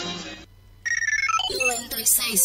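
Music fades out, and after a short gap a quick run of electronic beeps steps downward in pitch, like a ringtone.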